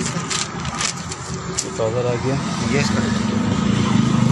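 Cloth being handled and unfolded, with short rustles early on and a brief man's voice. From under a second before the end, a steady low engine drone grows louder.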